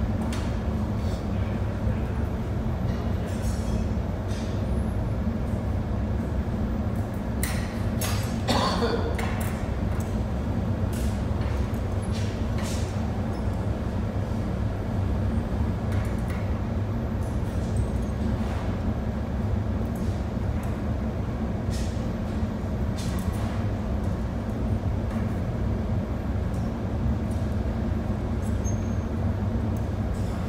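Steady low roar of a glass furnace in a glassworks, with occasional light clinks of the glassmaker's metal pincers and shears against the hot glass and the steel rod.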